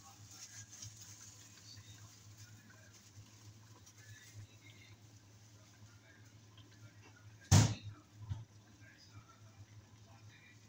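Whole dried red chillies frying in hot ghee, a faint sizzle over a low steady hum. A single sharp knock about seven and a half seconds in, with a smaller one just after, is the loudest sound.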